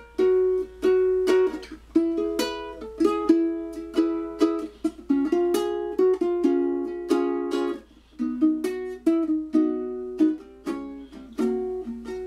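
Solo ukulele playing an instrumental break: a quick run of plucked notes and chords, each ringing briefly and decaying before the next. The ukulele sounds close up and dry, as in a small room.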